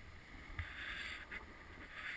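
Snow hissing and scraping under a descending rider in uneven surges, loudest about half a second in, over a low wind rumble on the camera's microphone.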